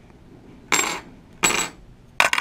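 One-ounce silver rounds tipped off a palm, clinking down onto the table and the pile of rounds: two bright metallic clinks with a short high ring, about a second in and again half a second later.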